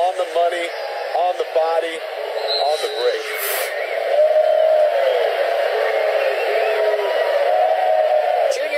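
Voices talking over the television broadcast, sounding thin and tinny with no low end, with a steadier run of voice or crowd sound in the second half.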